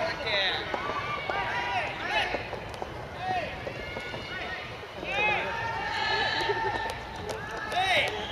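Several people's voices shouting short, high-pitched calls that overlap one another, with no clear words.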